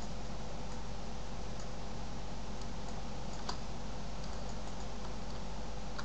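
Steady background hiss with a few faint clicks from working a computer, the clearest about three and a half seconds in.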